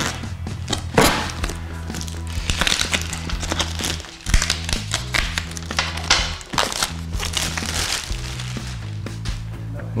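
Plastic shrink-wrap crinkling in short, sharp bursts as it is peeled off a cardboard box, over background music with a steady low bass.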